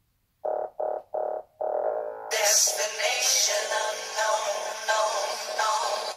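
A music video's soundtrack playing through the small built-in speaker of an Andoer 10-inch digital photo frame. It opens with three short notes and a longer one, then about two seconds in a full track comes in, thin and without bass.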